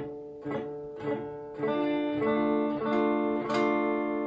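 Epiphone hollow-body electric guitar through a small amp, its open D minor chord picked one string at a time about every half second. Each note is left ringing, so they build into the full sustained chord. The notes ring out cleanly under light fretting pressure.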